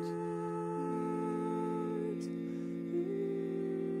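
Barbershop quartet humming a sustained four-part chord a cappella. The low bass note holds steady while the upper voices move to new notes about a second in and again near three seconds.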